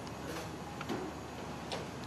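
Steady low background noise with a few faint, irregular clicks.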